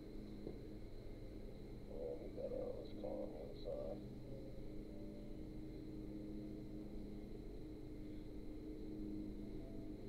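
Quiet room tone with a low steady hum and a faint high whine. About two to four seconds in, a few faint short voice-like sounds come and go.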